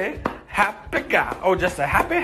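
A dog's paws knocking sharply and repeatedly against a glass-paned door as it jumps up at it.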